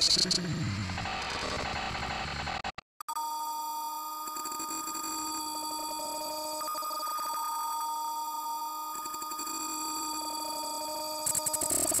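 Electronically distorted logo jingle audio: a falling sweep in the first second or so, a brief dropout about three seconds in, then layered steady held tones, and a sudden loud high-pitched burst near the end.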